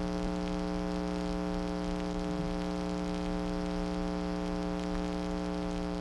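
Steady electrical hum, a mains-type buzz with a crackling hiss over it.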